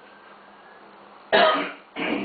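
A man clearing his throat once: a sudden short rasp about one and a half seconds in, after a brief lull with only faint room hum.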